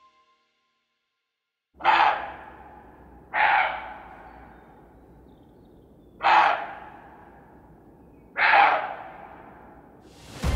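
Four loud, harsh animal calls at uneven gaps of about one and a half to three seconds, each starting abruptly and trailing off in a short echo.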